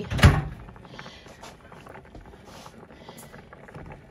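A single loud thump about a quarter second in, followed by faint scattered taps and low background noise.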